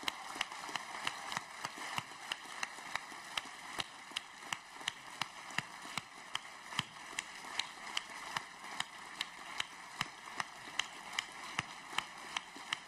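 An audience applauding, with one loud, even clap standing out about three times a second above the wash of clapping.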